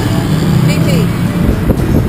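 Tuk-tuk's small engine running and street traffic heard from the open passenger cab during a ride, with voices over it.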